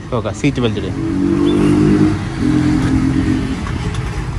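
Car engine revving: its note rises and swells for a second or two, dips briefly, then holds steady before dropping away near the end.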